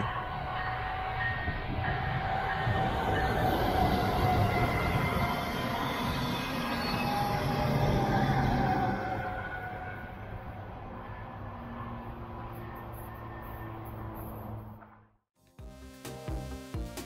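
Brightline passenger train passing at speed, a steady rush of wheels on rail that builds to its loudest about eight seconds in and then fades away. It cuts off suddenly near the end.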